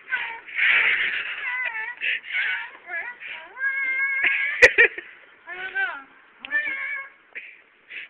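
High-pitched voices squealing and laughing in short breaking bursts, with one held shrill note about four seconds in. A single sharp click comes just after it.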